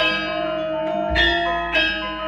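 Javanese gamelan ensemble playing a ladrang: bronze keyed metallophones struck in a steady pulse of just under two notes a second, each note ringing into the next. A deep low stroke sounds about a second in.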